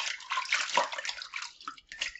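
Hands rubbing tomatoes in a plastic basin of water, with irregular splashing and sloshing that thins out near the end.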